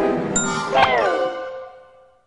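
Cartoon soundtrack: a bell ding over short music, then a pitched cartoon sound effect that jumps up and glides down about a second in, fading away near the end.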